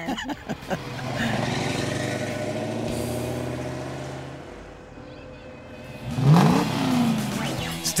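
1969 Camaro Z28's 302 small-block V8 running steadily as the car pulls away, its sound fading over a few seconds. A brief laugh comes at the start, and a guitar music sting starts about six seconds in.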